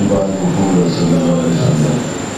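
A man's voice, amplified through a microphone and loudspeakers, leading a prayer in long drawn-out phrases.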